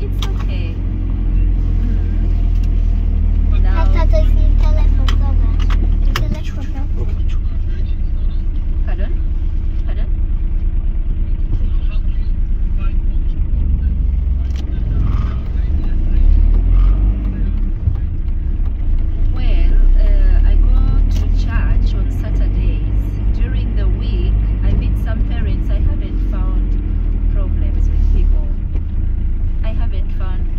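Road vehicle heard from inside while being driven: a steady, loud low engine and road rumble with a constant hum, and scattered light clicks and rattles.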